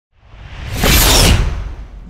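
Whoosh sound effect of a TV channel's logo intro, swelling up out of silence with a low rumble underneath, loudest about a second in, then fading away.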